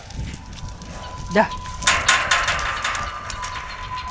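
Young lion cubs scuffling and tussling in their enclosure: a low rumble, then from about halfway a rush of scrabbling, rustling noise full of small clicks.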